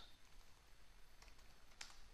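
Faint computer keyboard typing: a few soft key clicks over near-silent room tone.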